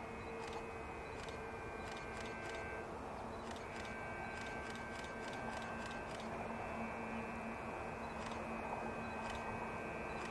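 Steady faint background noise with a low hum, broken by faint sharp ticks that come singly and in quick runs of several a second.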